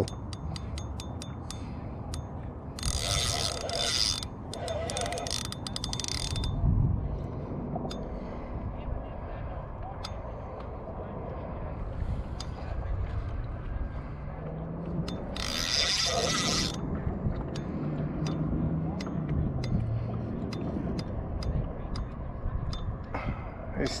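Spinning reel clicking and ratcheting while a heavy fish, probably a stingray, holds on the bottom. There are short bursts of rapid clicking about 3, 5 and 16 seconds in, with slower scattered clicks between them.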